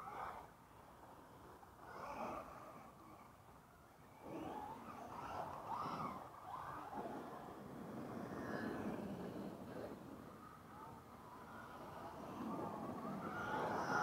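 Battery-electric RC cars driving on a dirt track: their motors whine up and down in pitch as they accelerate and slow, several times over, with tyres scrabbling on loose dirt. The loudest pass comes near the end.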